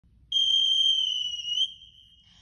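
A single high-pitched whistle blast lasting about a second and a half, wavering slightly in pitch just before it fades away.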